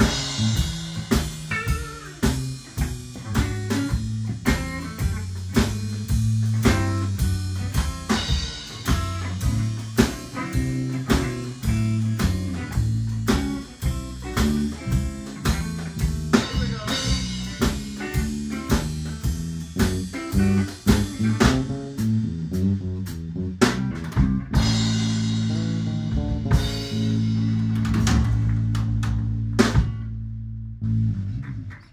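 Live band music: a fast instrumental tune with rapid plucked-string and percussive strokes, settling about 24 seconds in onto a long held chord that ends with a final strike.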